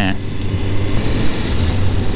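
Suzuki GSX-S750's inline-four engine running at a steady cruise, with wind and road noise, on a bike still in its break-in mileage.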